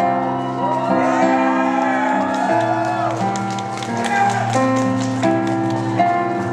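Live darkwave band playing an instrumental passage on keyboards and synthesizers: sustained chords that change every second or so, with gliding synth tones arching up and down over them and light ticking percussion in the second half.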